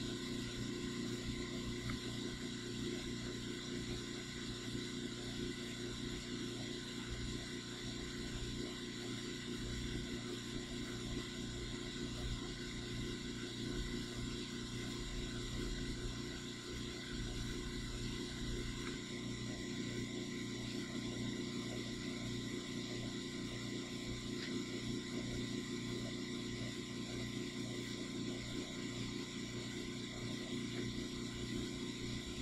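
Steady machine hum from a CNC router's stepper motors and drives, several steady tones holding level while the machine steps its probe across a board during surface probing.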